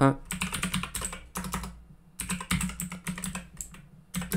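Computer keyboard typing: quick runs of keystrokes, with a short pause about two seconds in before the typing resumes.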